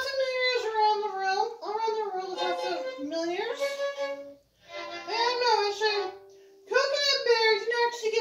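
A woman singing in a high voice, the pitch sliding up and down, together with violin playing. The sound drops out briefly a little past the middle and goes quiet again for a moment about three quarters through.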